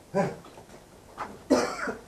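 A man coughing: three coughs, the last the longest, near the end.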